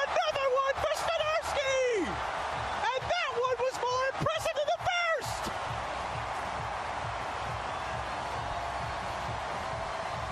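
High-pitched Mickey Mouse-style falsetto voice calling out and chuckling in short bursts over steady stadium crowd noise. About five seconds in the voice stops and only the crowd noise goes on.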